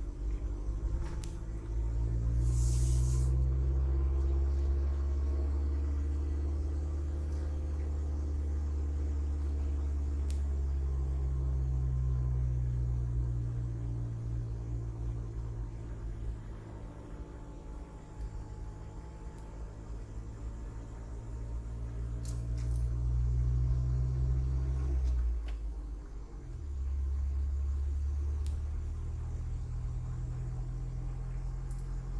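A motor vehicle's engine running as it drives along, its low rumble rising and falling in pitch with speed, and dropping away briefly about 26 seconds in before picking up again. A short hiss about three seconds in.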